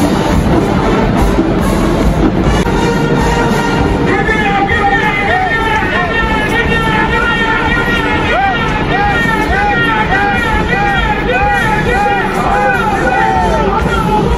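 Marching band playing in a domed stadium over loud crowd noise. From about four seconds in, a rising-and-falling melodic figure repeats about twice a second.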